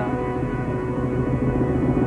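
Background music: a held chord over a fast, pulsing low note.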